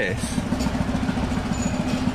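An engine idling steadily: a low rumble with a fast, even beat.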